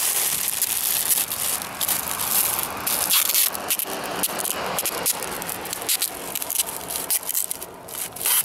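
Brown packing tape pulled off its roll and wound tightly around a plastic bag, the tape rasping as it unreels and the bag crinkling, in a continuous run of crackles.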